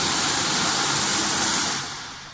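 A loud, steady hiss that fades away near the end.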